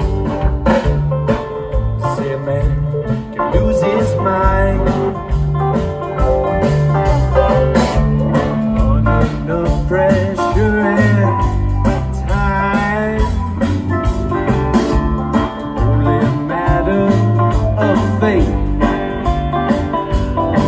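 Live twang-funk band playing an instrumental passage: electric guitar, banjo, bass guitar, drum kit and keyboard, with a lead line bending in pitch midway through.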